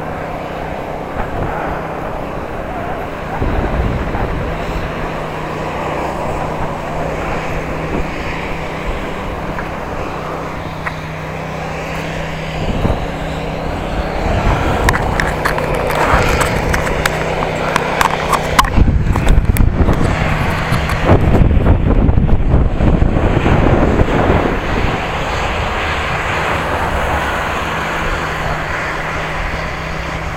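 Riding noise from a camera on a moving bicycle: wind rumbling on the microphone over tyre noise on paving, with a steady low hum under it for the first two-thirds. The wind buffeting is heaviest about two-thirds of the way through.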